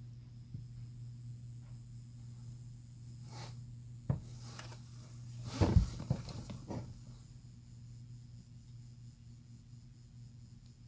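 Steady low hum of a well pump system running as it refills the pressure tank toward its 50 PSI cut-out. There is one sharp knock about four seconds in and a louder cluster of knocks and rustling around six seconds in.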